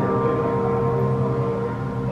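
Background music: sustained chords held steady, with no beat standing out.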